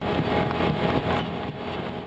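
Sugar beet harvester running as its elevator conveyor tumbles beets into a trailer: a dense mechanical rumble and clatter that slowly eases off in the second half.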